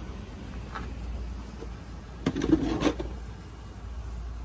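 A plastic engine cover being handled and set down: a short clatter of light knocks a little over two seconds in, over a steady low background hum.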